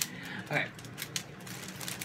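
Plastic snack packaging rustling, with a few sharp clicks, as it is handled and set down. Under it runs a steady low hum from the room's air conditioner.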